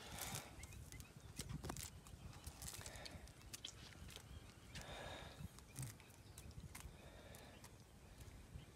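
Faint handling sounds: scattered small clicks and brief rustles as waterweed is pulled off a fishing line and frog lure, over a faint low rumble.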